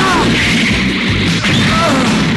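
Cartoon battle soundtrack: dramatic background music with a crash sound effect.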